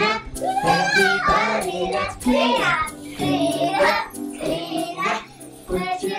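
Children singing over a music backing track.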